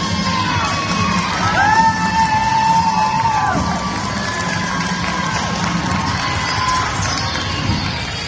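Gym crowd cheering and shouting over routine music, with long, high-pitched screams that rise and fall, loudest from about one and a half to three and a half seconds in.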